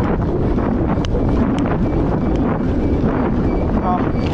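Steady wind rush on the microphone of a moving motorcycle, a loud even roar that runs unbroken and covers most other sound.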